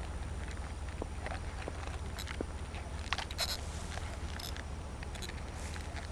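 Steady low wind rumble on the microphone, with scattered soft clicks and rustles of handling; the most prominent come about halfway through.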